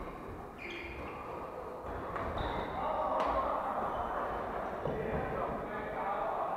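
Badminton rackets striking shuttlecocks: a few sharp cracks a second or so apart, the sharpest about three seconds in, echoing in a large sports hall.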